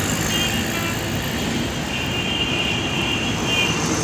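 Road traffic running past: a steady rumble of vehicle engines and tyres, with a thin high tone coming in twice.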